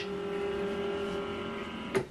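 HP LaserJet Pro M148dw flatbed scanner scanning a page: the carriage motor runs with a steady pitched whine as the scan head sweeps under the glass, then stops with a click at the end.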